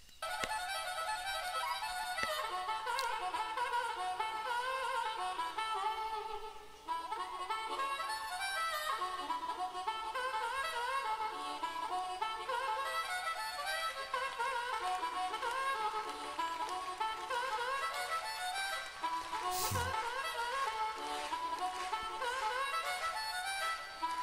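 Harmonica played into a handheld microphone, a long solo intro line of many bent, sliding notes. It pauses briefly about seven seconds in, and a single thump sounds about twenty seconds in.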